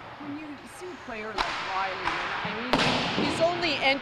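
A person's voice speaking, fainter and farther from the microphone than the coach's answer around it, most likely a reporter putting the next question. There is a short click about a third of the way in and a sharp knock about two-thirds of the way in.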